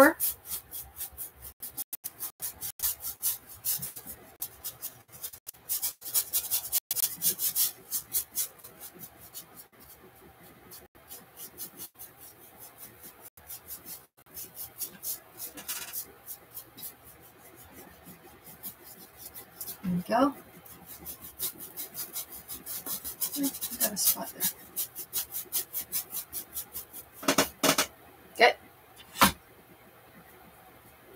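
Paintbrush scrubbing acrylic paint onto a canvas in quick scratchy strokes: a run of strokes, a quieter stretch midway, then another run.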